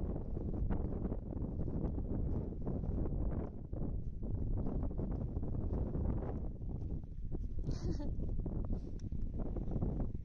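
Wind buffeting the microphone: a heavy low rumble that rises and falls in gusts.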